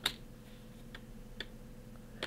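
A few short clicks from a computer keyboard and mouse as a brush name is typed in: one sharp click at the start, then two lighter ones about a second in and half a second later, over a faint hum.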